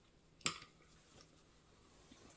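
Handling noise from a garment bag being lifted: a single sharp click about half a second in, otherwise faint.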